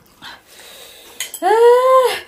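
A woman's high wailing cry, rising and then held for about half a second, starting about a second and a half in: a pained reaction to the burn of 3x-spicy Buldak noodles.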